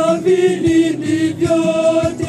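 Catholic church choir of women's and men's voices singing a hymn together, holding long notes that change pitch every second or so.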